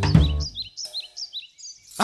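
Birds chirping: a run of about eight quick, high chirps in the second half, after a brief low pitched sound at the start.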